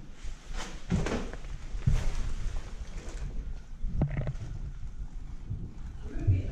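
Irregular thumps, knocks and rustles of a handheld camera being moved about close up, over a low rumble, with the louder knocks about a second and two seconds in and again about four seconds in.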